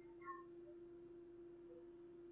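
Near silence: a faint steady hum, with a brief faint chirp about a third of a second in.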